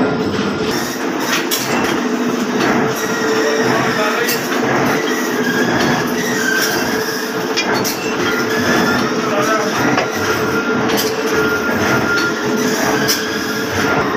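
Workshop metalworking machinery running steadily with a constant hum, with irregular sharp metallic clanks scattered through it.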